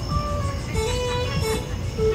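Live band music: a steady drum and bass beat under a held, sliding lead melody.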